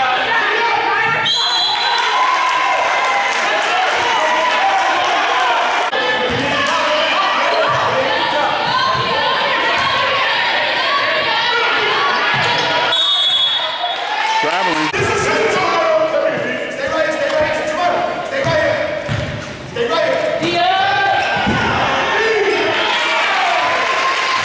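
A basketball being dribbled and bounced on a hardwood gym floor during live play, with people's voices calling out over it.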